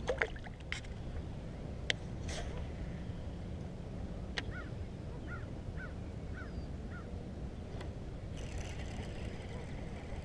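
Wind rumbling low on the microphone, with a few sharp knocks of gear handled in a plastic kayak. A bird gives a run of about seven short chirps in the middle. Near the end comes a thin high whir, fitting line paying off a baitcasting reel's spool on a cast.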